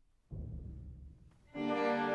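Orchestral music. A low timpani roll comes in about a third of a second in and fades, then about one and a half seconds in the strings enter with a loud, held chord.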